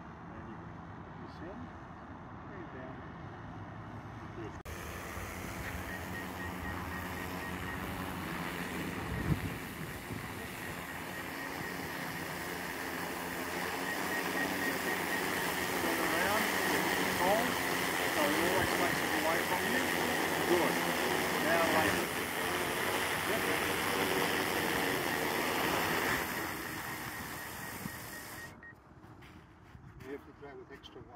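DJI Matrice 300 quadcopter's motors and propellers running, faint at first, then after a sudden cut about four and a half seconds in close and loud: a steady hum with a high tone that grows louder, then fades away near the end.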